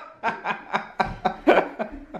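A person laughing in a quick, even run of short chuckles, about four a second.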